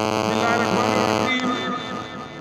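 Steady electrical hum: a buzz with many evenly spaced overtones that eases a little just over a second in, with faint voices beneath it.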